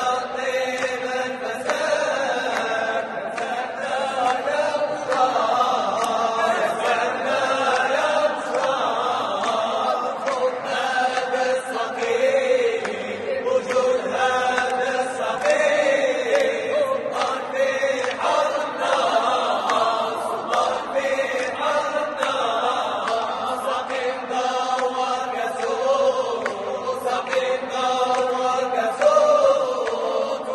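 A Moroccan male vocal group chanting together a cappella, in unison, with a slowly moving melody, echoing in a large church.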